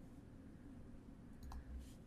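Near silence: faint room tone with a low hum, and a single faint click about one and a half seconds in.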